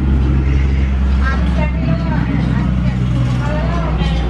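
A steady low machine hum, with indistinct voices talking over it partway through.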